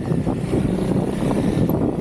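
Honda CRF300L dual-sport motorcycle's single-cylinder engine running steadily on the move, with wind noise on the microphone.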